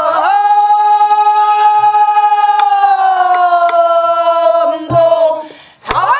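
Pansori students singing together, holding one long note that sinks slowly in pitch for about five seconds before breaking off near the end, with a few soft buk drum strokes underneath.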